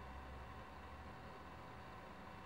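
Near silence: faint room tone with a thin steady hum and no distinct events.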